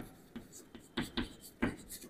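Chalk writing on a chalkboard: about five short, quick chalk strokes and taps with brief gaps between them.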